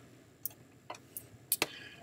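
A few faint computer mouse clicks, about five sharp separate ticks spread over two seconds.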